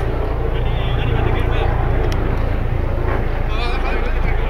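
Faint, distant shouts of players on a football pitch over a steady low rumble on the microphone.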